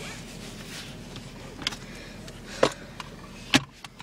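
A few sharp clicks or taps inside a car cabin, the loudest two about two and a half and three and a half seconds in, over a steady low hum.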